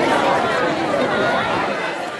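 Crowd chatter: many voices talking over one another at once, slowly fading toward the end.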